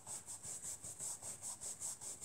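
Foam ink blending tool rubbed quickly back and forth over paper card, about six even strokes a second, blending yellow ink into the bottom of the design.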